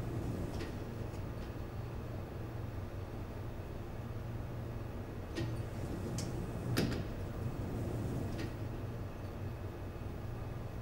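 An elevator's sliding door being held open: a steady low hum with a few sharp clicks and knocks from the door, the loudest about seven seconds in.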